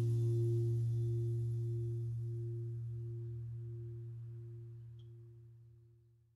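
The song's last held chord ringing out and fading away slowly, a low note under a higher one that wavers in a slow pulse; it dies away at the very end.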